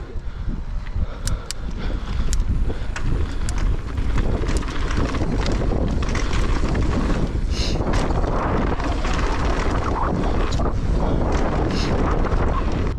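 Wind buffeting the microphone of a camera on a mountain biker riding fast down a dirt trail, with tyres rolling on dirt and scattered clicks and rattles from the bike; it gets louder over the first few seconds as speed picks up.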